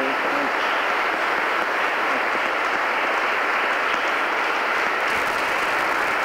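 Audience applauding steadily, a dense, even clapping that holds at one level throughout.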